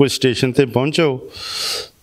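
A man speaking for about a second, then a short breathy hiss lasting under a second.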